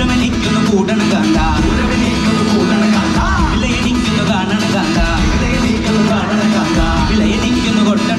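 A live band playing through a stage PA, with guitars and several voices singing over steady, loud music.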